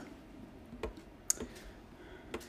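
A few sparse, quiet clicks from a laptop being operated: a soft knock a little under a second in and the sharpest click about a second later.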